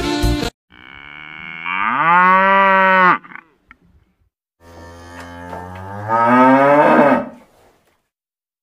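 A cow mooing twice: two long moos, each rising in pitch and stopping abruptly.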